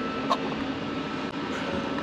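Steady mechanical hum of background machinery, with a faint click about a third of a second in and another near the middle.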